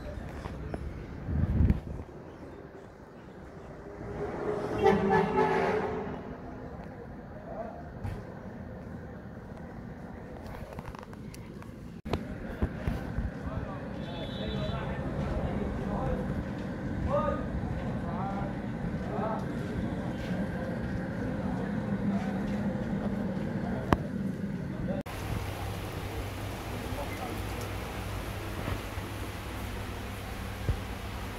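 Street ambience: a motor vehicle passes about four seconds in, then background voices over steady traffic noise. The sound cuts abruptly to a steady hum near the end.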